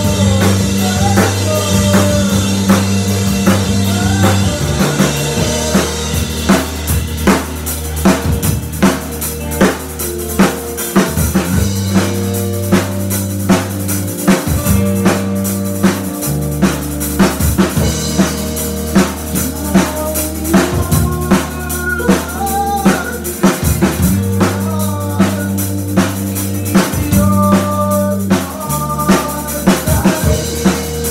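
A live rock band playing, a full kit keeping a steady beat under long held electric bass notes that change every couple of seconds, with a voice singing a wavering melody over it at times.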